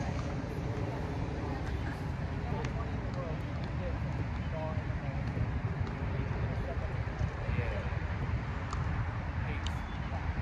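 Steady low rumble under faint, indistinct voices, with a couple of sharp clicks near the end.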